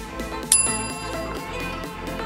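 Workout interval timer's bell chime, struck once about half a second in, ringing out over electronic dance music with a steady beat. It signals the start of the next exercise interval.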